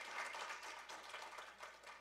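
Congregation applauding, the clapping fading away over the two seconds.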